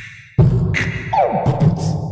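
A hip-hop beat with heavy bass, coming in suddenly about half a second in after a brief pause, with sharp hits and a couple of falling pitch slides.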